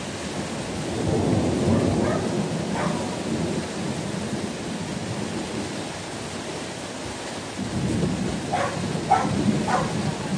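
Steady rain with thunder rumbling. The rumble swells about a second in and again near the end.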